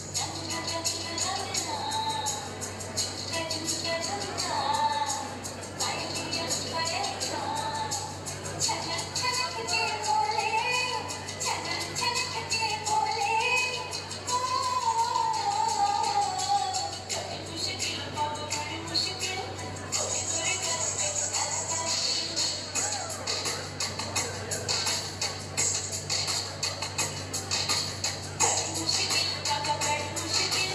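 A recorded song played over hall loudspeakers for a dance: a wavering sung melody over a steady, fast jingling percussion beat.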